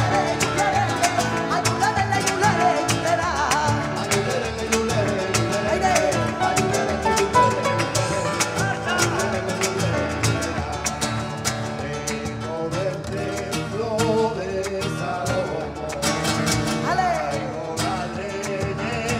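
Live flamenco por bulerías: Spanish guitar with rhythmic handclaps (palmas) and cajón, and voices singing over the compás.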